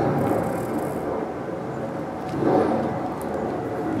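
Steady low background noise with no distinct event, swelling slightly about two and a half seconds in.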